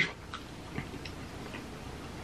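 Quiet room with a few faint, irregular mouth clicks from chewing a soft gelatin gummy bear.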